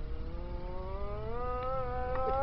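A cat's long, drawn-out meow, held on one call and rising slowly in pitch.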